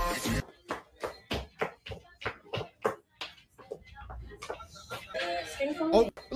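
Sharp percussive taps in a steady rhythm, about three a second, that thin out after about three seconds; a voice comes in near the end.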